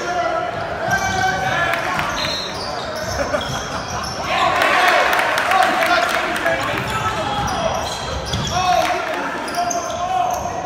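Basketball game sounds in a gym: sneakers squeaking on the hardwood floor, the ball bouncing, and spectators' voices. There is a louder stretch of crowd noise about four seconds in.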